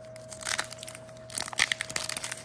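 Foil Pokémon booster pack wrapper being torn open by hand, crackling and crinkling in short bursts about half a second in and again through the second half.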